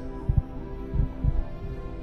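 Background film score: a sustained synth drone of held tones, with a few soft low thuds underneath.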